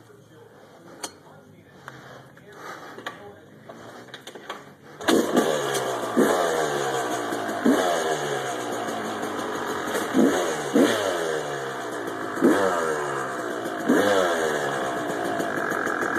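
Yamaha dirt bike engine catching and starting about five seconds in, after a few faint clicks. It then runs with repeated quick throttle blips, each a short rising rev that falls back to idle.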